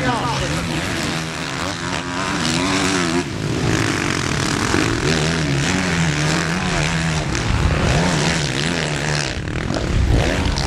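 Motocross bike engines revving up and down as the bikes ride the track, their pitch rising and falling over several seconds, with more than one engine heard at times.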